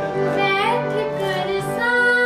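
A female singer's voice moving through wavering, ornamented phrases of a ghazal in raag Yaman (Aiman), over a steady drone accompaniment; near the end she settles on a held note.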